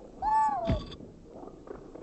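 A short, high-pitched cartoon creature call, a squeaky "whee" that rises and falls, with a quick low downward swoop at its tail; the rest is faint background.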